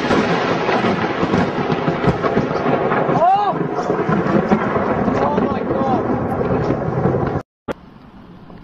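Thunder rolling and crackling on after a very close lightning strike, over rain; a short voice rising and falling in pitch sounds about three seconds in. The sound cuts off suddenly near the end, and after a single click a quieter storm follows.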